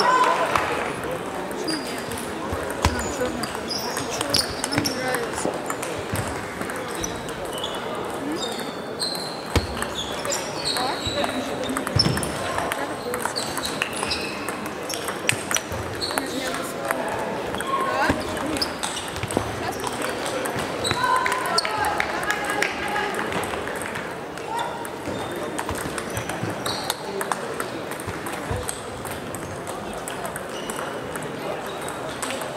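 Table tennis balls clicking off rubber bats and the table, many short sharp strikes from this match and neighbouring tables, over steady background chatter of voices in a large sports hall.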